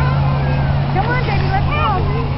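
A large vehicle's engine idling steadily, a low even hum, with people's voices chattering over it.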